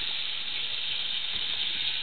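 Chicken tenders frying in hot grease: a steady sizzle.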